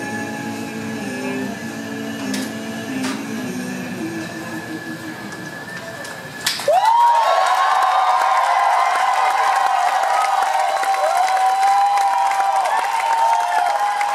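The last guitar notes of the song ring out and fade over a steady high whistle from the venue's mechanical systems. About six and a half seconds in, the audience breaks into loud applause and cheering.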